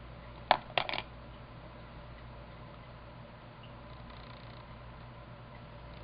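A few sharp plastic clicks and taps about half a second to a second in, as a clear acrylic stamp block and ink pad are handled on a craft mat, then only a steady low room hum.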